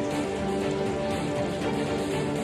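Instrumental background music with held, sustained notes over a steady hiss-like noise.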